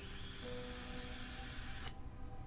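Long draw on an e-cigarette: a steady high hiss with a thin whine, cut off sharply with a click just before two seconds.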